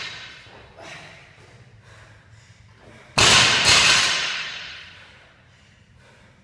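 Loaded barbell with bumper plates dropped onto a rubber gym mat about three seconds in: a loud crash, a second bounce half a second later, then the noise dies away over about a second and a half. A smaller thud comes about a second in.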